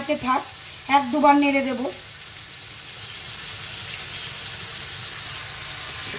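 Long beans and tomato pieces sizzling in oil in an uncovered frying pan on a high flame: a steady hiss that grows slightly louder towards the end.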